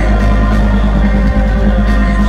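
Rock band playing live through a concert sound system, recorded from the crowd: a loud, steady wall of heavy bass and held chords, without vocals.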